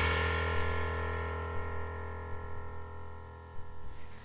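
Last chord of a band's song ringing out and slowly fading away, after a few short stabbed chords.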